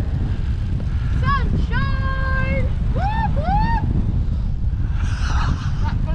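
Wind rushing over a bike-mounted camera microphone at riding speed, a steady low rumble. Partway through, a person's voice holds a few drawn-out high notes.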